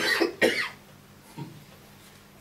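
A man coughing twice in quick succession into a microphone; both short, loud coughs fall in the first second.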